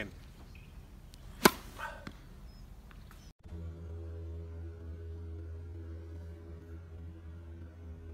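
A tennis racket strikes the ball on a slice serve with a single sharp crack about a second and a half in, followed by a couple of faint knocks. After a sudden cut, a steady low hum with a few held tones runs to the end.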